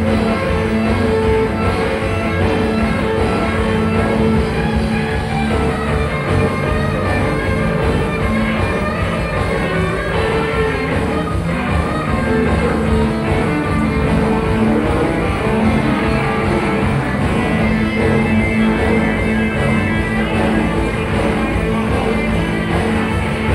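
Live rock band playing: two electric guitars, bass guitar and drum kit, loud and continuous.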